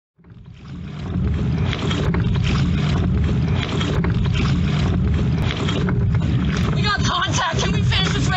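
Sound from on board a rowing shell fading in over the first second: a steady rumble of water and wind on the microphone, with a person's voice calling out near the end.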